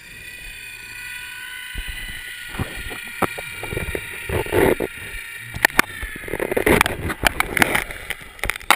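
Underwater sound through a GoPro's waterproof housing: a steady faint whine with several pitches, then water sloshing and bubbling and knocks against the housing. These grow denser and louder from about two seconds in as swimmers kick nearby and skin presses on the camera.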